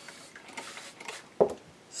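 Short sprays from a plastic trigger spray bottle aimed at an inked rubber stamp, then a single knock about one and a half seconds in.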